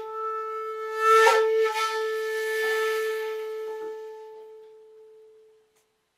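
Shakuhachi (end-blown bamboo flute) holding one long note with a breathy rush of air swelling into it about a second in, then slowly dying away to nothing near the end.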